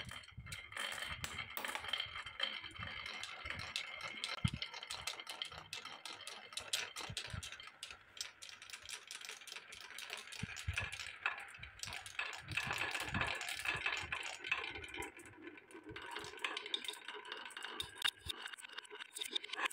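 Many glass marbles rolling and clattering along wooden marble-run tracks: a continuous rolling rattle thick with small clicks as they knock against the wood and each other.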